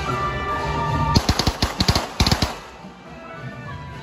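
Festive procession music playing, cut across about a second in by a rapid string of sharp firecracker bangs lasting about a second and a half; the music carries on more quietly afterwards.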